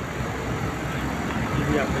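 Steady low rumble of motor traffic, engines running and idling on the street, with a man starting to speak near the end.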